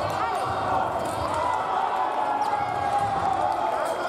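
Fencers' shoes thudding on the piste in irregular footwork steps, over a steady background of many voices echoing in a large sports hall.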